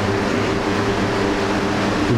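Steady machine hum: a low drone with a few held tones over an even hiss, unbroken throughout.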